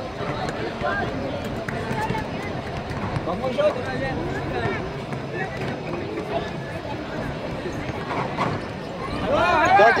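Spectators chattering around a basketball game, several voices overlapping at a moderate level with no one voice standing out; near the end a nearby voice grows louder.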